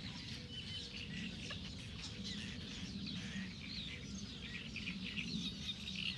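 Small birds chirping and calling, many short high calls overlapping throughout, over a low, steady background murmur.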